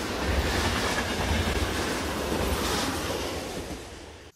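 A train running, a steady deep rumble under a broad rush of noise.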